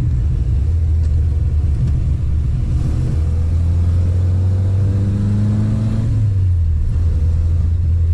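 Innocenti Coupé's BMC A-series four-cylinder engine heard from inside the cabin while driving, a steady low drone. Its pitch climbs for a few seconds as the car accelerates, then drops back about six seconds in.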